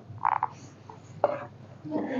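Paper sheets and cardboard tablet-box packaging being handled: a few short rustles, with a brief higher-pitched squeak-like sound about a quarter second in.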